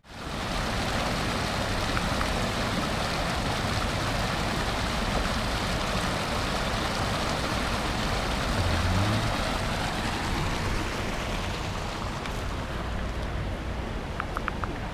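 Small rocky mountain stream rushing over stones in a low cascade: a steady, even rush of water, easing slightly near the end.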